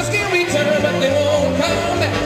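A big band playing live: held horn notes over a bass line that steps from note to note, with faint cymbal ticks.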